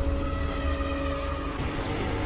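Cinematic intro music: a deep low rumble under several sustained, steady held tones.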